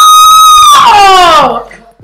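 A woman's very loud, high-pitched excited scream, held steady for a moment and then sliding down in pitch before it stops about a second and a half in.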